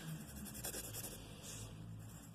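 Graphite pencil writing on a paper worksheet: faint scratching as a letter is written and circled.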